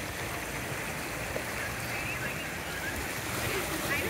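Small waves washing in over pebbles and rocks at the water's edge, a steady wash of water. Faint voices are heard, and a person's voice starts near the end.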